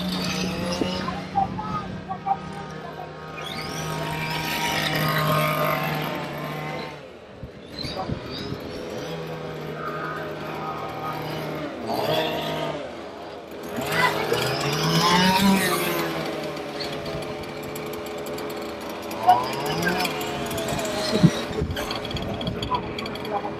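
Radio-controlled car running on an asphalt track, its motor steady at times and rising in pitch as it speeds up, about two thirds of the way in and again near the end. Two sharp knocks come near the end.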